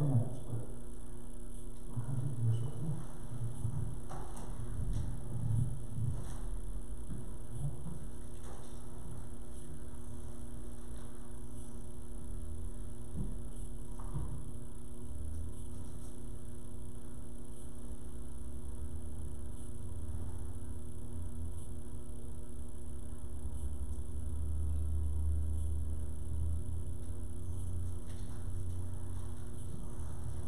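Steady room tone: an electrical hum with constant hiss and a faint low rumble. There are a few soft, muffled low sounds in the first several seconds, and the rumble swells slightly near the end.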